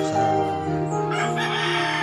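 Background music with long held notes, with a rooster crowing over it from about a second in.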